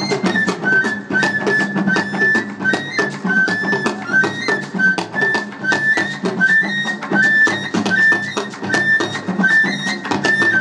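Live traditional West African ensemble music: a high flute repeats a short stepping phrase over and over above rapid hand-drum strokes and a plucked string instrument.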